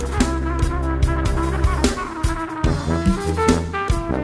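Jazz brass ensemble playing: horns and a low brass bass line over a drum kit.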